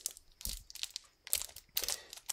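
Crinkling of a small clear plastic bag handled in the fingers as it is worked open, in a few short separate rustles.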